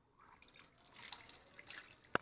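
Faint, irregular dripping and splashing of water as parts of a radiator cap are washed in a basin of water.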